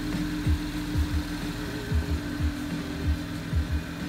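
Chevy Camaro's engine idling steadily, with a low steady hum, and low bass thumps of music running underneath at an uneven beat.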